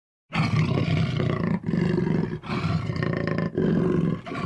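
Big cat roaring, a series of deep, rough roars starting just after the beginning, each about a second long with short gaps between them.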